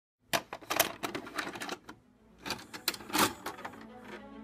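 An irregular run of sharp, clattering clicks and knocks, with a short lull about two seconds in.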